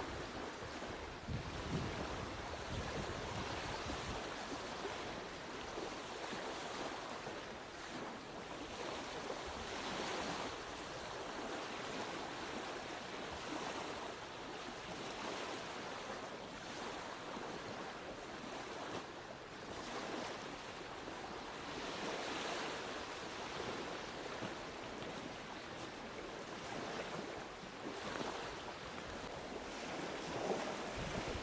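Small river waves lapping on a gravelly shore, washing in one after another, with wind buffeting the microphone briefly near the start.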